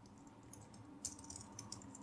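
Faint typing on a computer keyboard: a scatter of keystrokes starting about a second in, after a near-silent first second.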